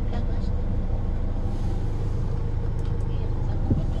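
Steady low rumble of a Hyundai Grand Starex idling, heard inside the cab, with the car radio turned down low so its broadcast is only faintly heard.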